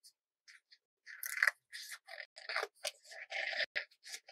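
Scissors cutting through a sheet of green paper in a run of short snips, starting about a second in.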